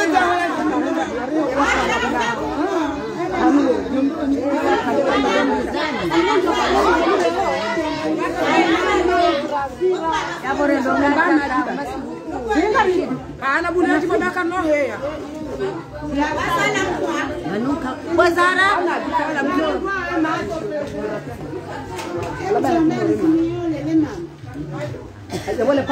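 Several women talking at once, their voices overlapping in loud, continuous chatter.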